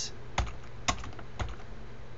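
Three keystrokes on a computer keyboard, about half a second apart: the space bar and the Ctrl+J shortcut being pressed to move to the next text field.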